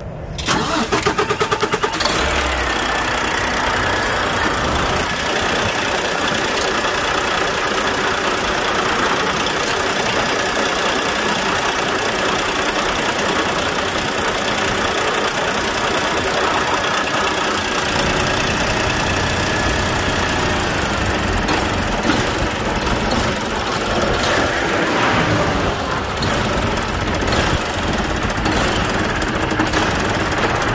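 Volvo D13 inline-six diesel cranking on the starter and catching within about two seconds, then running steadily at idle. This is a restart after priming the fuel filters, on an engine that keeps losing fuel prime and stalling.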